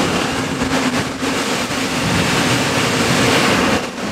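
Semi truck running, a loud steady noise with a low even hum and no change or strokes throughout.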